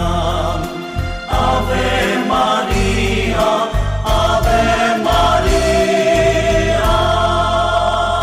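Vietnamese Marian hymn music with choir voices over a pulsing bass accompaniment, with a long held note in the middle.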